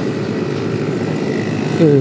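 Motorcycle on the move: engine and road noise mixed with wind buffeting the microphone, a steady dense rumble.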